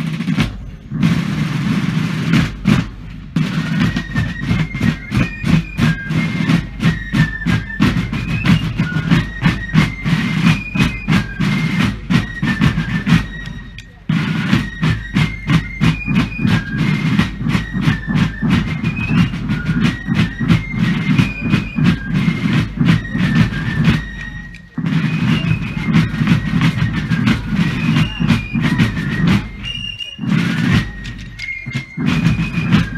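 Massed fife and drum corps playing a military tune: snare and bass drums open with a roll, and fifes take up the melody a few seconds in. The playing stops briefly twice between phrases, and each time the drums and fifes come back in together.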